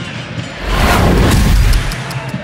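A broadcast transition sound effect: a rushing whoosh over a deep boom, starting about half a second in and cutting off sharply just before the end.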